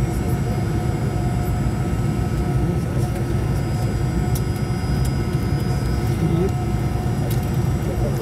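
Steady cabin noise inside a Fokker 100 airliner as it taxis slowly, its rear-mounted Rolls-Royce Tay turbofans idling: a low rumble with faint steady whining tones over it.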